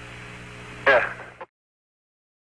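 Hiss and steady hum of the Apollo lunar-surface radio link between transmissions, with a short fragment of voice about a second in; then the sound cuts off to dead silence.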